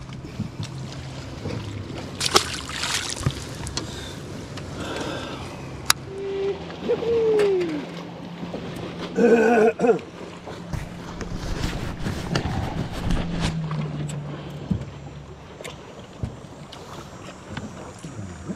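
Steady low hum of a boat motor, with scattered clicks and knocks from the boat and fishing gear. A short falling tone comes about seven seconds in, and a brief pitched, voice-like sound about nine seconds in is the loudest thing.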